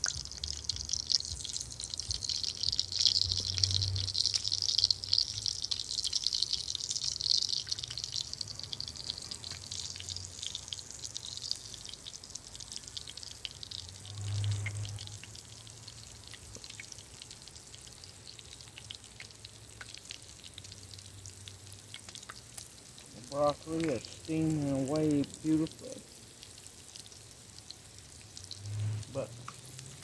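Flour-dredged beef liver slices frying in hot corn oil in a skillet: a steady sizzle with scattered crackles, loudest for the first several seconds and fading to a quieter sizzle after about ten seconds.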